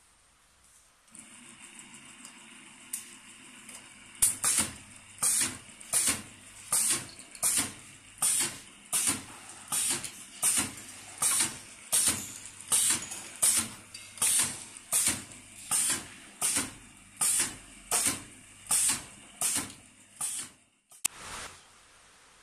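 A machine running through a repeating cycle: a sharp hissing stroke about every three-quarters of a second over a steady low hum. The hum starts about a second in, the strokes about four seconds in, and both stop abruptly near the end.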